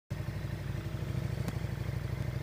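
Motorcycle engine running at low speed, a steady low pulsing rumble, with a single short click about one and a half seconds in.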